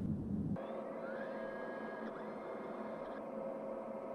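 Spaceship-interior electronic ambience: a steady hum and hiss with faint held tones, and a short rising chirp about a second in. A deeper rumble underneath cuts off about half a second in.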